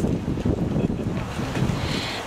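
Wind buffeting an outdoor microphone: an uneven low rumble.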